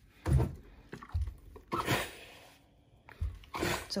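A clothes iron being picked up and set down on a padded ironing blanket, with fabric being handled: about four soft, short thumps and rustles.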